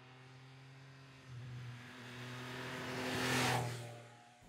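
A sport motorcycle's engine holding a steady pitch as the bike rides past, growing louder to a peak a little over three seconds in, then fading quickly.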